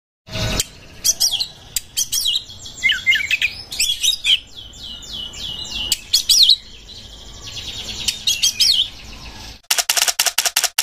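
Oriental magpie-robin (kacer) singing a long, varied song of loud whistles and quick trills, with a run of evenly repeated falling notes in the middle of the phrase.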